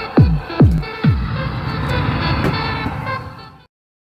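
Elaut E-Claw crane machine's prize-win jingle, played when the prize sensor is tripped: electronic dance music with a steady kick drum about twice a second, which gives way about a second in to a held chord that fades and stops shortly before the end.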